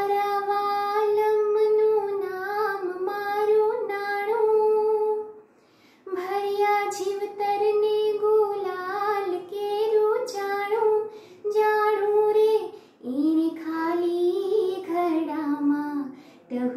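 A woman singing solo and unaccompanied, holding long notes with small turns and slides, in phrases broken by a breath pause about five and a half seconds in and another shortly before thirteen seconds.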